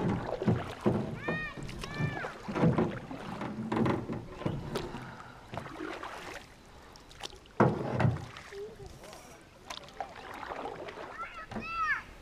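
Canoe paddling: paddles dipping and splashing in the water and knocking against the canoe hull at irregular intervals, with low voices and a few high, arching calls.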